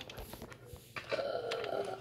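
A person's short wordless vocal sound, drawn out for just under a second about halfway through, with a few faint clicks before it.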